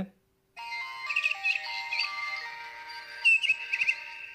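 LG Viewty Smile mobile phone playing its startup sound through its own small speaker: a synthesized melody of held tones with bird-like chirps over it. It begins about half a second in and is super loud.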